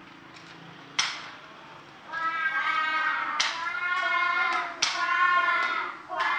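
A class of young children reading aloud together in unison, chanting drawn-out syllables, starting about two seconds in. A sharp knock comes about a second in, before the chanting.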